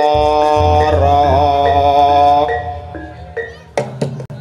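Javanese jaranan gamelan music: a long held melodic note with a brief waver in pitch sounds over a low drone and fades out about two and a half seconds in. Sharp percussion strikes start just before the end.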